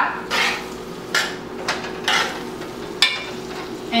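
Metal spoon stirring and scraping through a pan of ackee, tofu and vegetables in an aluminium pot, in about four strokes roughly a second apart, over a light sizzle from the pot.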